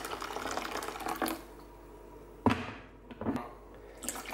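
Boiling water poured from a kettle into a plastic bowl, a steady splashing pour that stops after about a second, followed by a single sharp knock.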